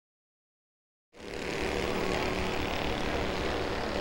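Race car engines running at speed around a short oval track, a steady drone that fades in about a second in after silence.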